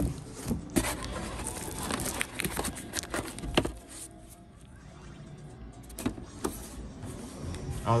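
Rustling, crinkling and light knocks from hands handling plastic wrap and the cardboard box insert while unpacking. The sounds come as a series of short, sharp handling noises for the first three or four seconds, then grow quieter, with a couple more knocks about six seconds in.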